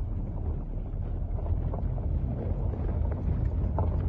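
Steady low rumble of wind buffeting the microphone outdoors.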